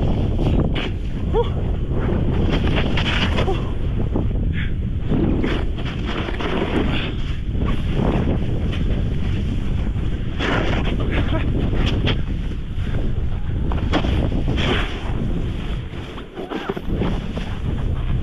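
Heavy wind buffeting an action camera's microphone as a snowboarder rides fast through deep powder, with the rushing hiss of the board and snow spray surging at each turn. It dips briefly near the end.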